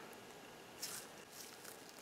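Near silence: quiet shop room tone, with one faint, brief rustle about a second in and a couple of tiny ticks after it.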